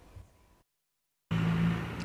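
Faint room tone that drops to dead silence, then, just over a second in, street traffic noise starts suddenly, with a vehicle engine running as a steady low hum.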